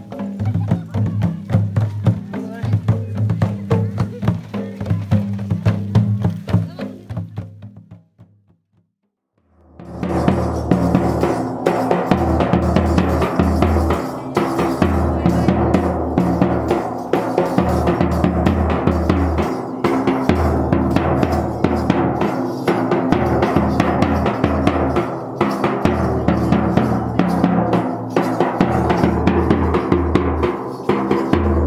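Folk drumming for dancing, a steady beat with deep drum strokes, fading out about eight seconds in. After a second or so of silence, a large double-headed bass drum beaten with a stick starts up with a fast, loud rhythm and sharp clicking percussion over it.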